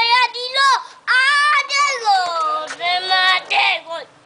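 A toddler's high-pitched voice in several drawn-out, sing-song phrases, the pitch gliding up and down, in the manner of a football commentator's call.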